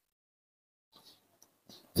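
Near silence, then a few faint soft ticks and rustles in the second half.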